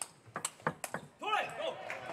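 Table tennis rally: the plastic ball clicking off the bats and table in quick succession, then about a second in a player's loud, drawn-out shout as the point is won.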